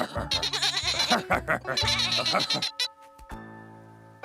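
Cartoon sheep's bleating chatter over background music, breaking off about three seconds in into a held musical chord.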